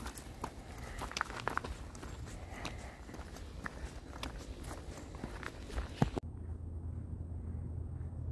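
Footsteps crunching on a gravel trail at a walking pace, heard close from a handheld camera. About six seconds in the sound cuts off suddenly and gives way to a steady low hum.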